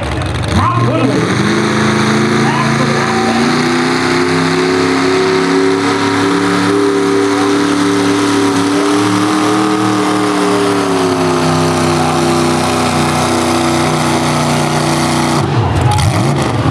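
Pickup truck engine running at high, held revs under heavy load as it drags a truck-pull weight sled, its exhaust coming out of twin stacks through the hood. The pitch rises a little midway, sags slightly later, and drops away just before the end.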